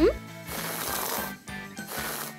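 A crackly hissing sound effect for a hot glue gun squeezing out a bead of glue, in two stretches with a short break between them. It follows a brief rising cartoon squeak right at the start, over light background music.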